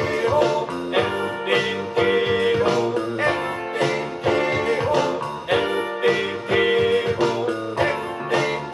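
Guitar-led song played from a vinyl record on a Fisher Studio Standard MT-6221 turntable fitted with an Audio-Technica M35V cartridge.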